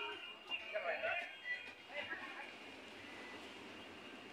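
Faint, distant voices of people on a beach during the first two seconds, over a steady low wash of surf breaking on the shore.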